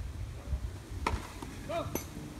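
A tennis ball struck by a racket about a second in, one sharp pop, followed by a short cry of 'Oh!' and a second sharp tap just before the end, over a low wind rumble on the microphone.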